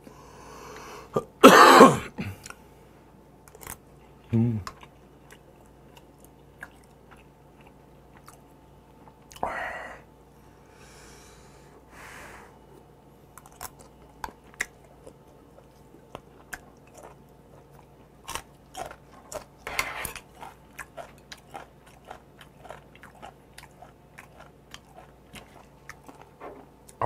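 Close-miked eating of hot stew: a loud slurp from a spoon about a second and a half in, then quieter slurps and wet chewing with many small mouth and spoon clicks through the second half.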